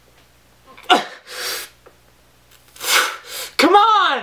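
A man straining at a one-arm pull-up: a short grunt about a second in, hard puffs of breath, and a loud strained cry near the end that rises and falls in pitch.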